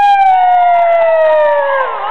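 A loud siren-like wail: one strong pitched tone that slides slowly downward, dips near the end, then climbs back into a wavering tone.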